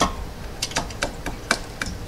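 A string of light, sharp taps, irregular and roughly three or four a second, as a metal shaft coupler is tapped by hand onto the keyed engine shaft.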